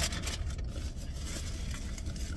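Steady low rumble of a car engine idling, heard inside the cabin, with a few crisp crackles in the first second from eating hard chips.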